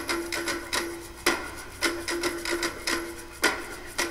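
Background music in a sparse passage: hand-percussion strokes at uneven spacing over one held note.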